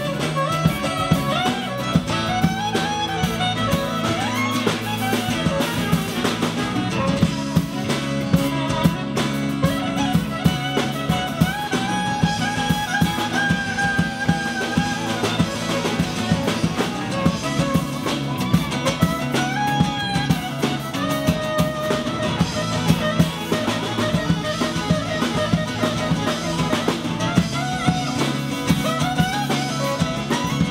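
Live band instrumental break: a soprano saxophone plays a lead melody, with held notes and slides, over strummed acoustic guitar, electric bass and a drum kit keeping a steady beat.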